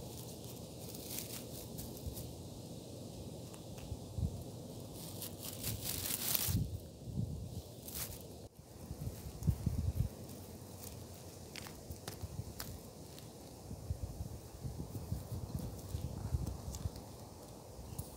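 Grass rustling and scattered light taps as plastic toy horse figurines are walked by hand through a lawn and over bare dirt, with a few low bumps in the middle.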